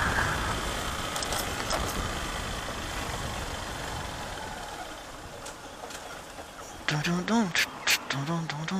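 Motorcycle engine running with wind and road noise while riding, growing gradually quieter as the bike eases off toward a stop. A voice is heard briefly near the end.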